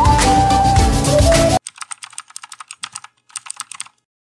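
Background music with a flute-like melody stops suddenly about one and a half seconds in. It is followed by rapid computer-keyboard typing clicks, with one short pause near the end.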